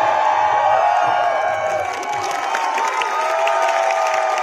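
A large crowd cheering and shouting, many voices at once, with a few long drawn-out shouts standing out in the second half.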